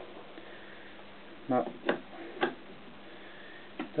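Quiet room tone, broken by a couple of brief faint clicks about two seconds in and one short spoken word.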